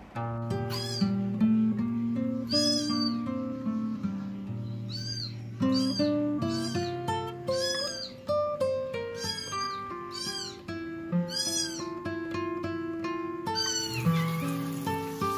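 Kitten mewing over and over, about a dozen short calls that rise and fall in pitch, over background instrumental music.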